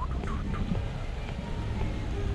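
Birds calling: a few short, curved chirps in the first half second, over a steady low rumble.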